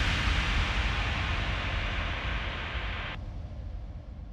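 The closing tail of a hard house track: a wash of white-noise hiss over a low rumble, fading steadily after the final hit. The hiss cuts off abruptly about three seconds in, leaving only a faint low rumble.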